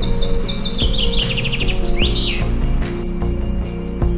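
A songbird singing: a run of high repeated notes that quickens into a trill and ends in a rising flourish about two seconds in, over background music with sustained notes.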